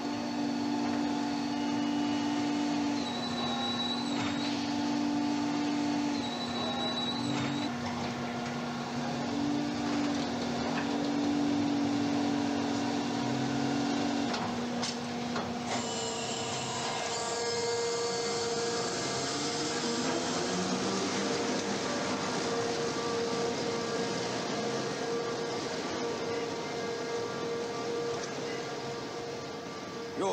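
Mechanical whirring and humming of an automated car-parking garage lift. About halfway through, the sound changes to a higher steady hum, with a rising whine soon after as the lift carries the car.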